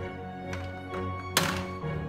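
Electronic tune playing from a plastic toddler activity cube toy, with a sharp plastic knock about one and a half seconds in.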